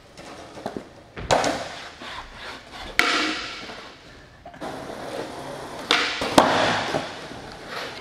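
Skateboard on a concrete floor: the board knocks down on the concrete about four times, the last two close together near the end, with its wheels rolling in between.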